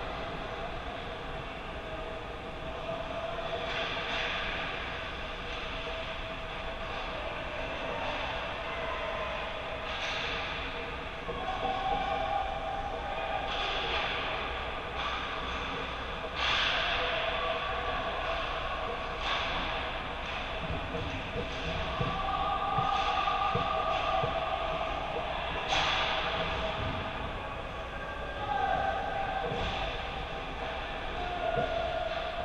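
Ice hockey rink during play, heard from behind the goal: distant players' shouts echo through the arena over a steady rumble, with several sharp clacks of stick and puck on the ice and boards.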